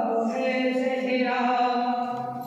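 A boy's voice chanting devotional verse unaccompanied into a microphone, drawing out long held notes.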